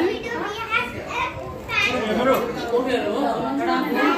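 Background chatter of several people, children's voices among them, talking and calling out.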